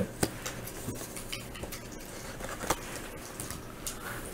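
Faint handling noise of a trading card and a clear plastic card holder on a desk mat: scattered light clicks and rustles, with one sharper click nearly three seconds in.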